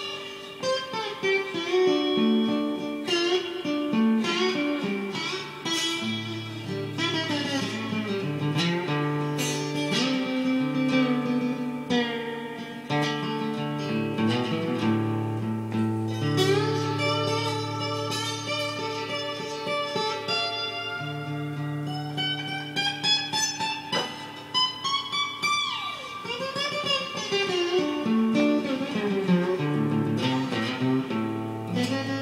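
Blues guitar playing an instrumental break: steady chords and a walking low line underneath, with a lead of bent, gliding notes above.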